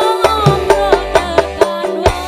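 Live dangdut band music: a gliding melody line and a woman singing over steady kendang hand-drum strokes and electric guitar.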